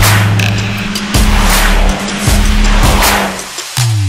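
Driving electronic soundtrack music with sustained heavy bass notes and repeated sweeping hits, with car sounds mixed in. A falling sweep comes in near the end.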